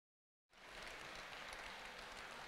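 Dead silence, then about half a second in the audio cuts in on faint, even background noise: the open-air ambience of a seated audience before the speaker starts.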